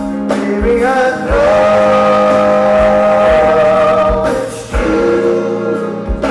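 Live acoustic soul song: a male voice swoops up and holds one long, wavering sung note, then starts a new phrase near the end. Under it are acoustic guitar chords and a steady kick-drum beat.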